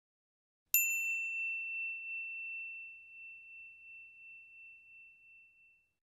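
A single high, clear ding, like a small bell or chime struck once, ringing out and fading away over about five seconds.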